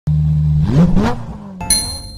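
Intro logo sting: an engine sound effect holds a steady low note, revs up sharply and falls away, then a bright chime strikes near the end.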